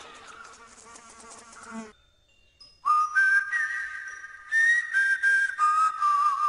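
A high, whistle-like melody of pure held notes that step between pitches, starting after a short silence about three seconds in and wavering into vibrato near the end. Before it, a faint ringing passage cuts off about two seconds in.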